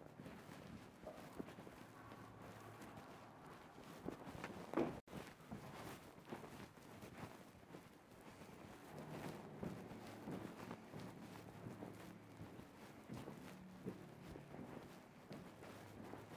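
Faint footsteps of a person walking on a hard floor, with one louder knock about five seconds in.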